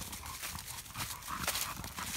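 Footsteps of a person and dogs walking through dry fallen leaves on a woodland trail: irregular rustling steps.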